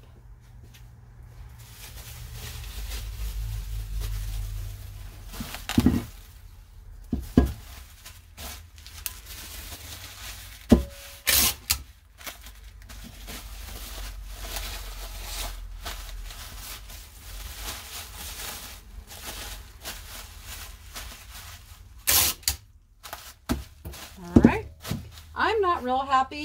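Plastic bubble wrap rustling and crinkling as it is wrapped by hand around a ceramic muffin pan, with several sharp clicks and knocks scattered through the handling.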